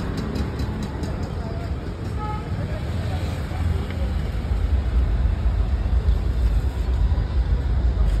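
Street traffic rumbling steadily, growing louder about halfway through, with faint voices in the background.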